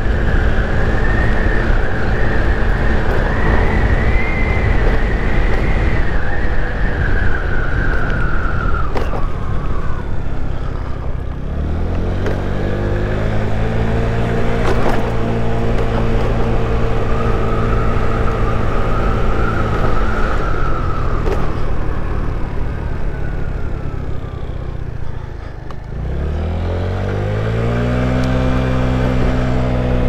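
Boom PYT Revolution 50cc scooter engine and belt drive under way: a steady run with a high whine, easing off about ten seconds in, then revving up to pick up speed again. It slows once more near the end and revs up again, with wind noise on the microphone throughout. The engine is running well on six-gram variator rollers.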